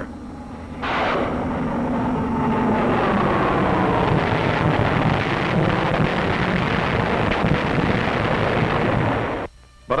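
Rockets fired from a Grumman Avenger and their impacts: a long, loud rushing roar with a whine that falls in pitch, starting about a second in and cutting off suddenly just before the end.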